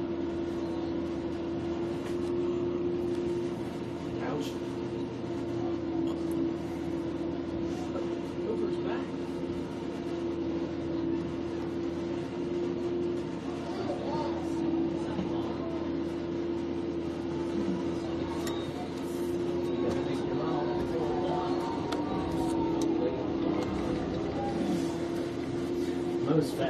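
A steady, even drone holds one pitch all through, with faint distant shouts from soccer players calling on the field.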